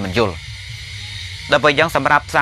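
A man's voice preaching a Buddhist sermon in Khmer. The speech breaks off for about a second, leaving a steady low hum, and then resumes near the end.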